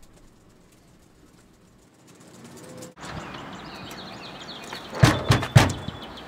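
Fist knocking on a door, a quick run of about four knocks about five seconds in, over a steady background hiss.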